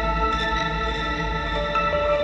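Background music: sustained ambient guitar-like tones with heavy effects and reverb, the chord shifting near the end.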